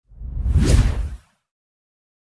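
Whoosh sound effect for a logo reveal, with a deep low rumble under it. It swells for about a second and then cuts off.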